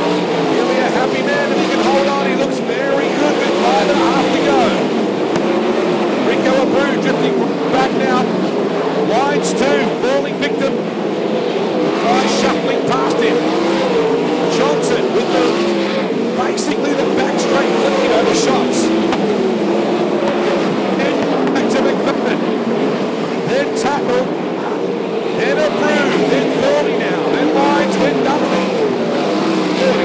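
A pack of winged sprint cars racing on a dirt oval, several V8 engines running hard at once, their overlapping pitches rising and falling as the cars go through the turns and down the straight.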